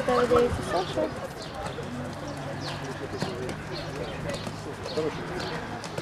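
Indistinct talking of people near the microphone, loudest in the first second, with the hoofbeats of a horse cantering on a sand arena and birds chirping behind it.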